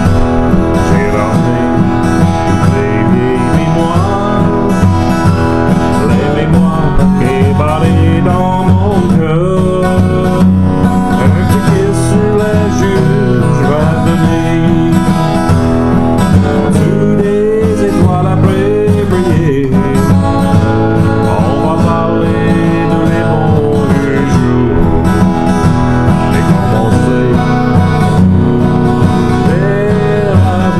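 Freshly restrung Martin acoustic guitar strummed steadily through a Cajun French song, with a man's voice singing a bending melody over it.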